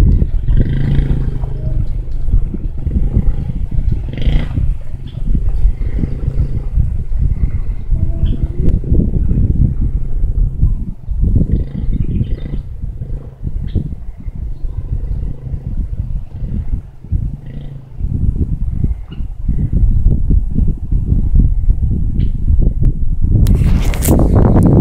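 Wind buffeting the phone's microphone in loud, uneven low gusts. Under it, a Yamaha TTR50's small single-cylinder four-stroke engine runs as the bike rides away, clearest in the first second.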